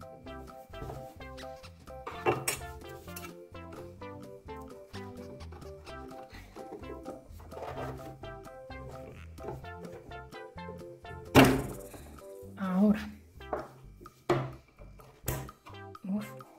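Background music of plucked notes, with two sharp knocks near the end, the loudest about eleven seconds in, from the metal door-handle backplate and its fittings being handled and knocked on a wooden worktop.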